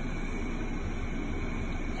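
Steady background noise, an even low rumble and hiss with no distinct events.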